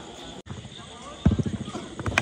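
A quick run of dull thumps starting about a second in, the first the loudest, on an artificial-turf cricket pitch as the bowler runs in.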